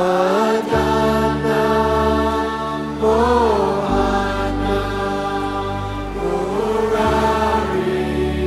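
A male voice chanting a mantra in long, slowly gliding phrases over a sustained drone accompaniment whose bass note shifts a couple of times.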